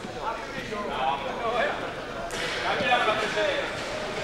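Indistinct chatter of several people in a large hall, away from the microphone. It grows louder and noisier about halfway through.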